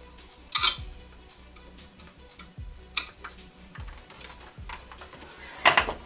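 Three short, sharp plastic clicks and knocks from a wall-mounted kitchen foil and paper-towel dispenser being handled. The loudest cluster comes near the end, as its front cover is closed.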